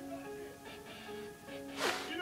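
Background music with steady sustained notes; near the end, a short sharp burst of noise as a paper toy gun fires a small paper projectile.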